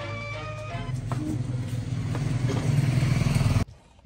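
A low, buzzing motor-like drone that grows steadily louder, then cuts off abruptly shortly before the end.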